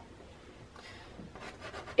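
A pastel stick rubbing across the paper in faint, scratchy strokes, growing a little louder in the second half.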